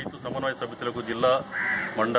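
A man speaking in short phrases into a handheld news microphone. A brief harsh, rasping sound comes about three quarters of the way in.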